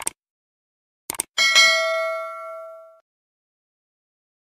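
Subscribe-button sound effects: a short click, a quick pair of clicks about a second later, then a bright bell-notification ding that rings out and fades over about a second and a half.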